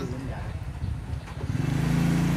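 A motor vehicle's engine running steadily and growing louder about a second and a half in, as if it is drawing nearer.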